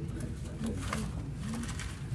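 Men's voices murmuring quietly and low, a few short, indistinct sounds close together, over a steady low hum, with light clicks and rustles.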